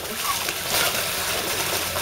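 A person splashing about in lake water just after plunging in: a steady rush of splashing and spray.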